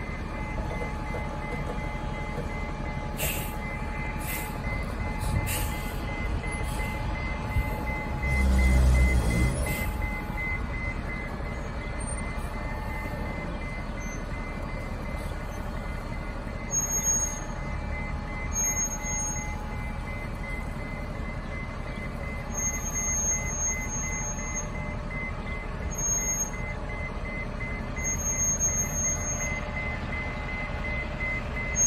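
30 ft transit bus reversing slowly, its back-up alarm beeping steadily at a high pitch over the low running of the engine. A louder low rumble swells briefly about eight seconds in.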